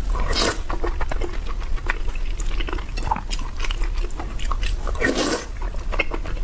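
Close-miked wet chewing and mouth sounds of eating saucy braised meat, rice and glass noodles, with many small sticky clicks. Two longer slurps stand out, about half a second in and again about five seconds in, as the food and noodle strands are sucked in.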